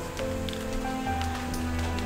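Background music of held, sustained notes over a low drone.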